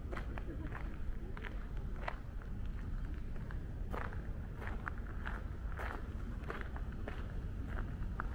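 Footsteps walking on a grit path in an uneven series of short scuffs, over a steady low rumble.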